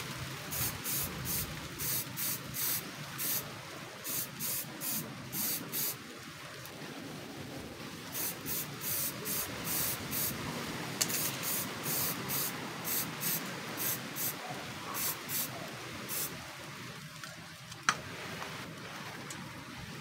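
Aerosol spray can of clear top coat sprayed in short hissing bursts, about two a second, in runs with a brief pause about six seconds in; the bursts stop about three-quarters of the way through. A single sharp click follows near the end.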